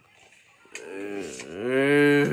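A man's wordless, drawn-out low vocal sound, close to the microphone. It starts under a second in, dips in pitch briefly, then rises and is held, getting louder toward the end.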